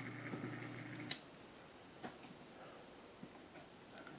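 A faint low electric hum is switched off with a sharp click about a second in, followed by a few faint small clicks.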